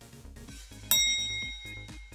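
Electronic background music with a steady beat; about a second in, a bright bell-like ding rings out over it and fades over about a second, a correct-answer chime marking the right choice.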